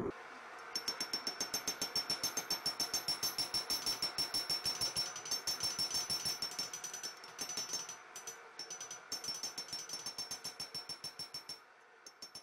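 Hammer blows on a red-hot spring-steel knife blade on an anvil: a rapid, even run of about five ringing strikes a second, with two short breaks about two-thirds through, stopping shortly before the end.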